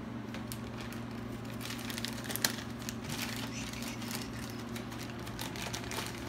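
Packaging crinkling and rustling in quick, irregular crackles as guitar kit parts are handled and unwrapped, with one sharper click about two and a half seconds in, over a steady low hum.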